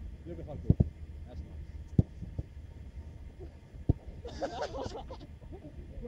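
Footballs being struck and caught in a goalkeeping drill: a quick pair of sharp thuds just under a second in, then single thuds about two and four seconds in. A person's voice calls out about four seconds in.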